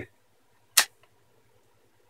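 A single sharp plastic click just under a second in: the last snap-fit clip of a portable hard drive's plastic case letting go as the case is pried open. A tiny tick follows, with near silence otherwise.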